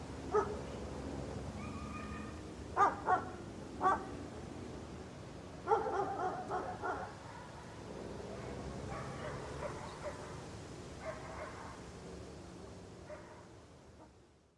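A dog barking over steady outdoor background noise: a bark right at the start, two quick barks and another around three to four seconds, and a rapid run of barks around six to seven seconds. Fainter, scattered barks follow, and the background fades out at the end.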